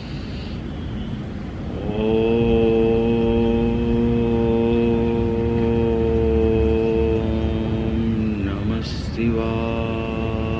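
A man chanting a long, steady "Om" that starts about two seconds in and is held on one pitch for some six seconds. There is a brief break for breath with a click near the end, then the next "Om" begins. Before the chant there is a rushing, wind-like noise.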